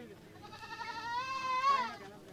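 A Beetal goat bleating: one long call that starts about a third of a second in, rises slightly in pitch, then falls away near the end.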